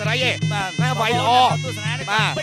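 Traditional Khmer boxing ring music: a buzzy sralai reed pipe playing a wavering, gliding melody over a steady repeating drum beat.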